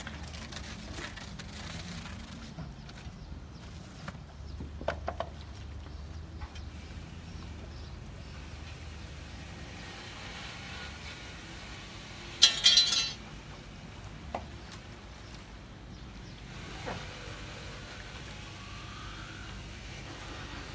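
A low steady rumble, a few light knocks about five seconds in, and a short, loud clatter a little past the middle, from work at a boat's wooden slipway cradle.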